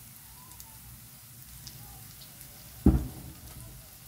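Small fish frying in oil in a pan, a faint steady sizzle, with one low thump about three seconds in.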